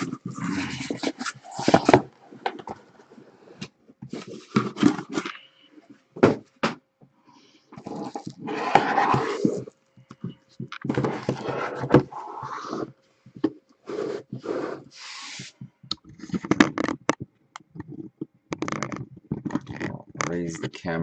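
Foil-wrapped trading card boxes being slid out of a cardboard shipping case and stacked on a desk: irregular rustling and scraping of cardboard and wrapping, with short knocks as the boxes are set down.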